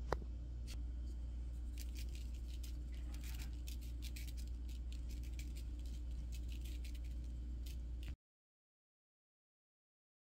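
Lemon pepper seasoning being shaken from a glass spice jar: a run of quick, irregular rattling clicks over a steady low hum. The sound cuts off abruptly just after eight seconds.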